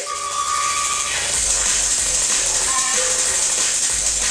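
Drum and bass mix played from vinyl on two turntables through a DJ mixer, with a strong high hiss over it. A held tone sounds for the first second, then deep bass comes in about a second and a half in.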